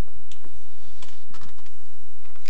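A few sharp taps of footsteps on a hard floor as a person walks a few paces.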